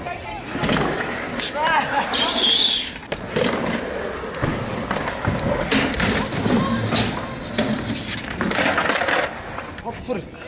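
Skateboard wheels rolling over concrete, with a few sharp clacks of boards hitting the ground, and a short high squeal a couple of seconds in.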